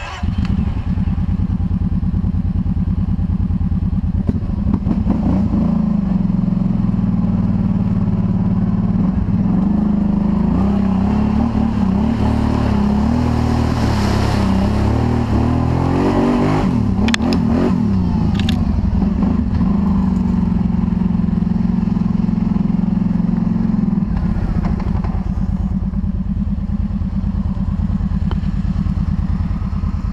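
Kawasaki ATV engine running steadily as it is ridden over a muddy trail, the pitch rising and wavering for several seconds in the middle with a few sharp knocks, then easing off lower near the end.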